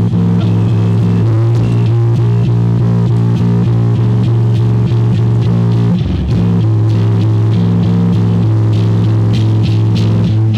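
A live punk band plays loudly: distorted electric guitar, bass and drums with crashing cymbals over a sustained low drone. The sound briefly drops out about six seconds in.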